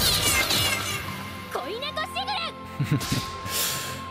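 Anime fight-scene soundtrack: music with a steady held note, a sweeping slash effect at the start, and a brief line of high-pitched character dialogue midway.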